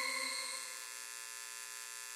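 Sustained electronic hum, the synth tail of the intro music: a steady chord of tones slowly fading away, with a light regular flutter.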